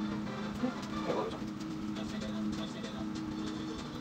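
Meat patties frying in a pan, a soft sizzle under a steady low hum.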